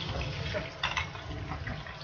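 Slices of su ji (pressed tofu roll) frying in shallow oil in a wok, a steady gentle sizzle: the heat is low and they are not frying hard. A couple of sharp clicks come about a second in.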